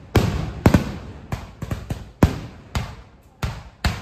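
Aerial firework shells bursting in quick succession, loud sharp bangs about two to three a second, each trailing off in a rumbling echo.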